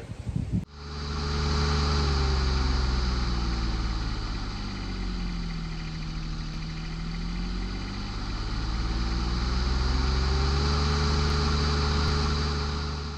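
An engine running steadily. About halfway through its speed eases down, then it builds back up to where it started.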